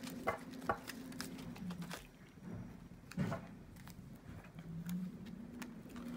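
Tarot cards handled on a cloth-covered table: soft scattered taps and flicks of the cards, busiest in the first two seconds, with one louder tap just past three seconds. A faint steady low hum runs underneath.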